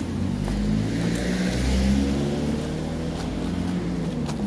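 A car driving past on the road, its engine note and tyre noise swelling to a peak about halfway through and then easing off.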